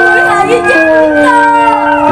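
A singer's drawn-out, wavering vocal line in Vietnamese stage opera, gliding up and down in pitch over instrumental accompaniment that holds several steady notes.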